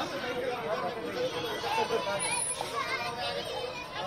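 Children and adults playing together, their excited voices and shouts overlapping into a lively chatter with no clear words.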